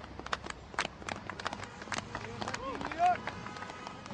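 A rapid, irregular run of clicks and knocks, with short snatches of voice-like sounds about two to three seconds in.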